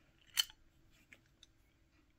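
A single sharp metallic click from a Craftsman half-inch drive ratchet being handled, about half a second in, then a couple of faint ticks.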